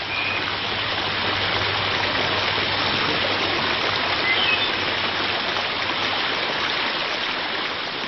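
Rows of small garden fountain jets arcing into a long narrow pool: steady splashing of water.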